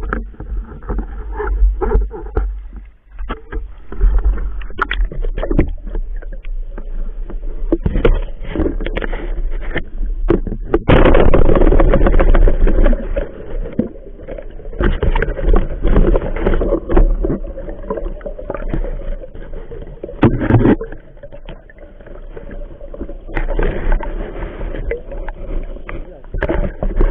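River water sloshing and gurgling around a handheld camera as a spearfisher wades and dives, with many knocks and scrapes of handling. There is a stretch of heavy churning a little before the middle, and the camera goes under the surface near the end.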